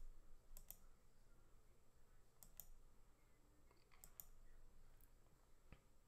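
Faint clicks from a computer's controls, often in pairs, every second or two, over near silence.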